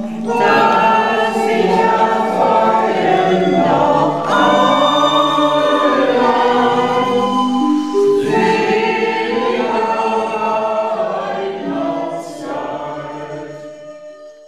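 A choir singing, several voices together, fading out over the last couple of seconds.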